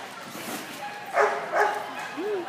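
Dog barking twice, two short barks about half a second apart, starting a little past a second in.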